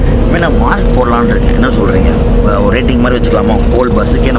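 A man talking over the low, steady rumble and hum of a bus cabin, heard from inside a sleeper berth.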